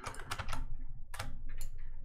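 Computer keyboard and mouse clicking: a run of irregular sharp clicks as the Control key is held and the mouse is clicked and dragged.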